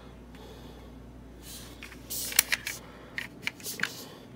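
A small metal diecast model car being handled in the fingers. After a quiet start with a faint low hum, there is rustling and several light clicks and taps in the second half.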